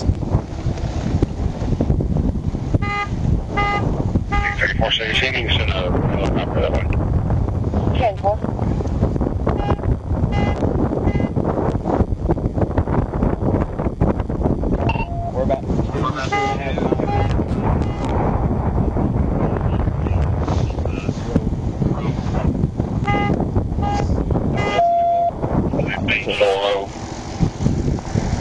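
Steady low rumble of wind and roadside traffic on the trooper's microphone, with indistinct voices. Short electronic beeps in twos and threes recur every six or seven seconds.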